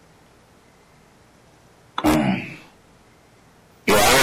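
Faint steady hiss on a video-call line, then about halfway a person clears their throat once, briefly. Just before the end a loud, hissy burst of sound begins.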